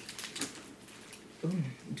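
Several quick, sharp clicks and crackles in the first half second from hands breaking a crab-leg shell inside a plastic bag, then quiet handling.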